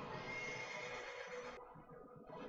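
A wounded horse whinnying in an anime battle scene, heard faintly from the show's soundtrack playing in the room. The cry ends about a second and a half in.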